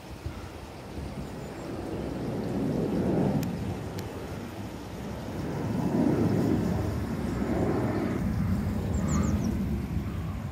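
Low outdoor rumbling noise that swells and fades in slow waves, with a few short high chirps near the end.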